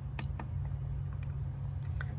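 A few light clicks from pressing the round control knob on the front panel of a GoFort P25 portable power station, the sharpest one just after the start, over a steady low hum.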